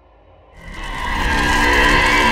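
Trailer sound effect: a harsh screeching swell, like tyres skidding, that rises sharply about half a second in and stays loud, with tones of the score running through it.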